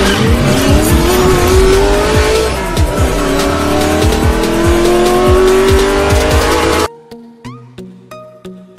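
Race car engine sound effect revving up, its pitch rising steadily, dropping about three seconds in as if shifting gear, then rising again, over music with a steady beat. It cuts off suddenly near the end, leaving quieter music with light plucked notes.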